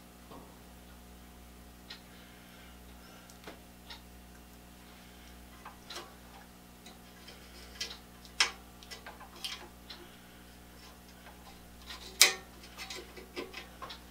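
Irregular light clicks and rattles from handling a continuity tester's clip lead on a power cord and plug during a ground continuity check. The clicks grow busier in the second half, loudest about eight and twelve seconds in, over a faint steady hum.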